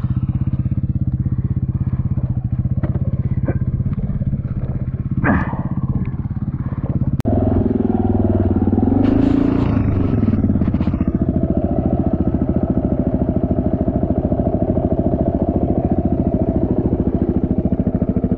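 Suzuki DRZ dirt bike's single-cylinder four-stroke engine running at idle, its firing pulses steady. About seven seconds in the sound changes abruptly with a click, and the engine revs up briefly a couple of seconds later before settling back to a steady idle.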